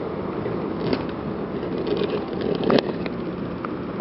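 Street traffic noise, a car passing, with a couple of sharp clicks about a second in and again near the three-second mark.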